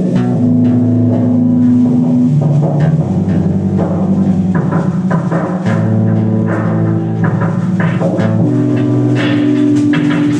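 A live rock band playing loud and steady: drum kit, electric guitars and bass guitar, with keyboard and violin.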